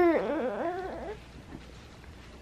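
Baby's whimpering cry, wavering up and down in pitch and trailing off within about a second: a sleepy, fussing infant.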